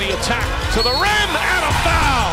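Basketball game broadcast audio: a ball being dribbled on a hardwood court, with arena crowd noise and a commentator's voice, under steady background music.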